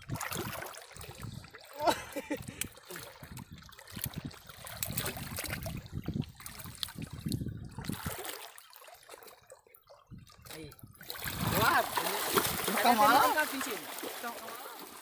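Shallow sea water splashing and sloshing around people standing and moving in it. Voices talk loudly near the end.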